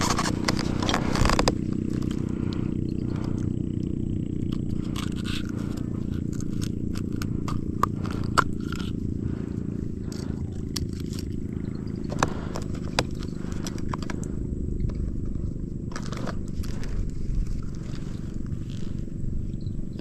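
Steady low rumble with scattered sharp clicks and scrapes from a landing net and a lip-grip fish-holding tool being handled in a small boat.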